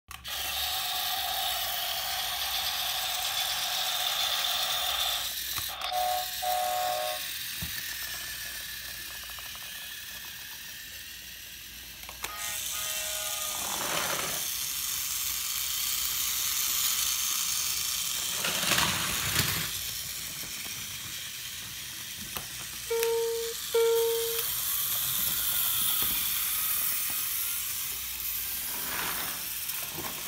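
Battery-powered GeoTrax remote-control toy trains running on plastic track, their small motors and gears giving a steady whirr, with louder passes as trains go by. Short electronic toy sound effects sound twice, at about six and again at about twenty-three seconds.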